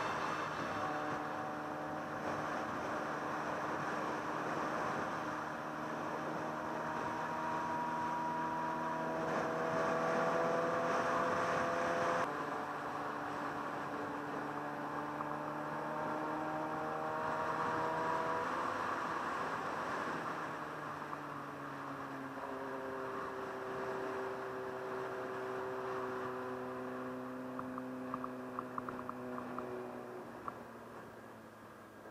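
Motorcycle engine running under way with wind rushing over the microphone; the engine note climbs slowly, drops abruptly about twelve seconds in, then rises and falls again as the bike changes speed.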